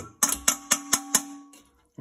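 Metal kitchen tongs clinking against a stainless steel mixing bowl, about six quick strikes in the first second that set the bowl ringing with a steady tone that fades out.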